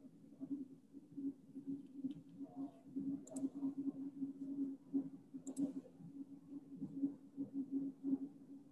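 Faint, irregular small clicks and taps over a steady low hum: quiet room and line noise on a video-call feed.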